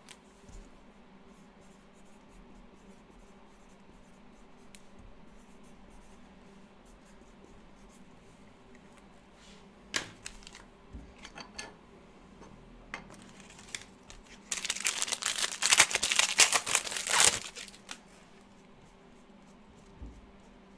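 A foil trading-card pack being torn open and its wrapper crinkled, a loud crackling burst of about three seconds in the second half. It comes after a few light clicks of the pack being taken from the stack.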